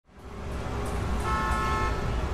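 Street traffic rumble as a trolleybus passes close by. A steady horn tone, several notes held together, comes in a little past halfway.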